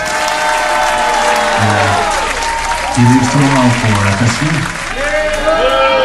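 Audience applause over a band's electric guitars playing held, bending notes, with a few low bass notes in the middle.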